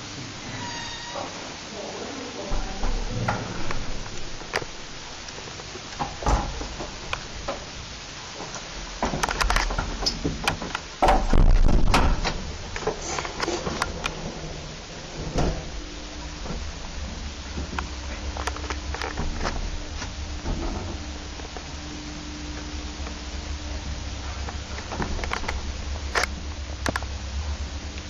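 Small original ASEA passenger lift: a brief ding about a second in, then clunks and clatter of the landing door and inner car doors being worked, loudest around the middle. From about halfway through, the lift motor hums steadily as the car travels.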